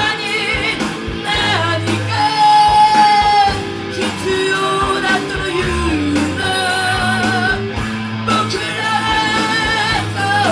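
Live rock band: a woman sings held notes with vibrato over a distorted electric guitar played through a Marshall amp, with a steady beat of drums and bass underneath.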